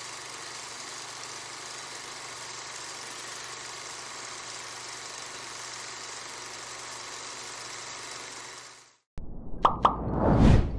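A steady machine-like whir: an even hiss over a low hum, holding level and cutting off about nine seconds in. Just after it, two sharp hits open a music intro.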